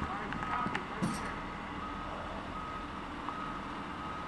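Truck engine running with a backup alarm's steady tone switching on and off over it, and a brief noise about a second in.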